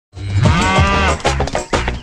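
A cow mooing in one long call whose pitch rises and then falls, over background music, with shorter sounds following in the second half.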